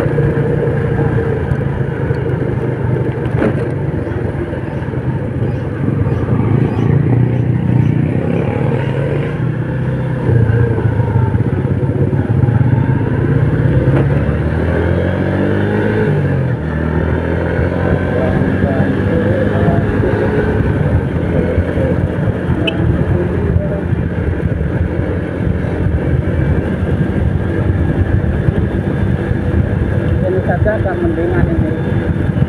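Small underbone motorcycle engine running while riding, its note stepping up about a third of the way in and then sliding and rising again about halfway through, with wind rushing over the microphone.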